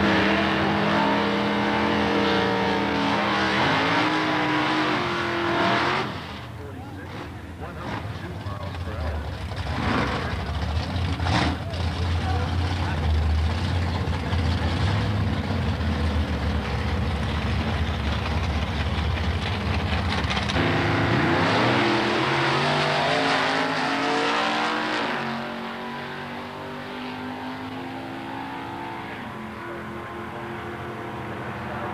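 Drag-racing cars at the strip: engines revving in rising and falling sweeps, then a long stretch of rough, heavy engine noise with a deep rumble. About 21 s in the engine notes climb steadily as the cars launch and accelerate away, and the sound fades over the last few seconds as they run off down the track.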